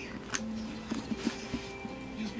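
A few light metal clicks from a small padlock being pushed shut on a leather handbag's clasp, over quiet background music.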